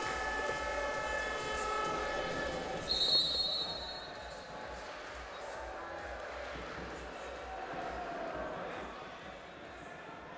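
Basketball hall ambience. A held chord of steady tones sounds for the first three seconds, and a brief shrill high tone comes about three seconds in. After that there is general hall noise with a basketball bouncing.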